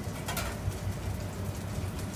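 Ayu frying in hot peanut oil, sizzling with a steady crackling hiss over the low hum of the kitchen.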